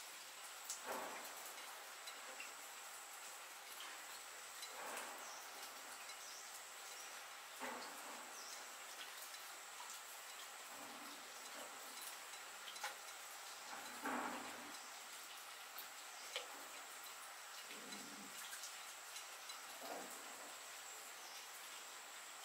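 Hands kneading and pressing soft mashed-potato dough on a flour-dusted bamboo tray, giving a few soft, muffled pats and squishes every few seconds, over a faint steady hiss and a thin high tone.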